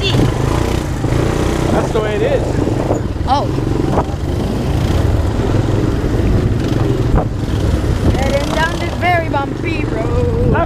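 ATV (quad bike) engine running steadily while under way, a constant low drone.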